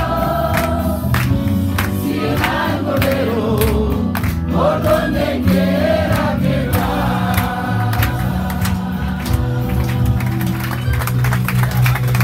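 A crowd of people singing a hymn together in chorus, over sustained low accompaniment and a regular sharp beat.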